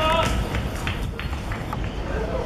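A short shout from a player right at the start, then a few faint knocks and scuffs, over a steady low rumble of outdoor wind on the microphone.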